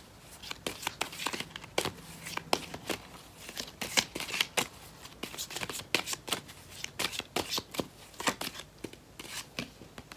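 A tarot deck being shuffled overhand by hand: quick, irregular slaps and rustles of the cards, several a second.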